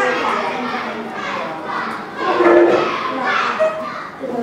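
Many schoolchildren talking at once in small groups, a steady overlapping babble of young voices.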